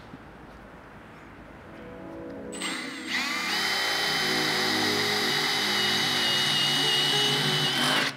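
Cordless drill spinning up about two and a half seconds in, then running with a steady high whine as it bores a small pilot hole through the sheet-metal front guard of a Toyota Prado. Background music plays under it.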